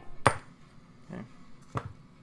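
Two sharp metallic clicks of small hand tools handled on a wooden workbench board: a loud one just after the start and a softer one near the end.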